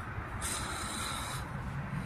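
Rubbing and handling noise as the small rubber coolant overflow hose is worked off the plastic expansion bottle. A short hiss runs from about half a second to about 1.4 s in.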